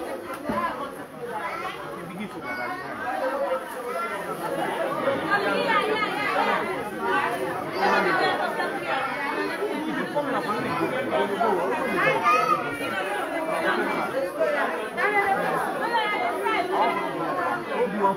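Crowd chatter: many voices talking over one another at once in a packed room, a continuous babble with no single speaker standing out.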